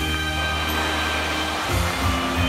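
Steady rushing hiss of musical-fountain water jets spraying up, over show music holding a low sustained note. The music's beat drops out for about a second and a half and comes back near the end.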